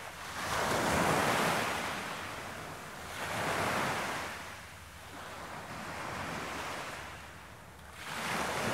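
Ocean surf: waves breaking and washing in, three slow surges that swell and fade about every three seconds.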